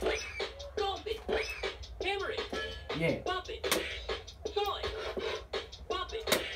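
Bop It Refresh electronic handheld game playing its beat-driven music mid-round, a rhythmic electronic beat with short scratch-like pitch sweeps and clicks.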